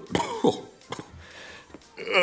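A man coughing, about three short coughs in the first second, in a puff of flour dust, then quieter.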